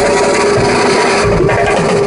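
Live street band playing loudly, led by a snare drum struck with sticks close to the microphone, over a steady held low note from the band.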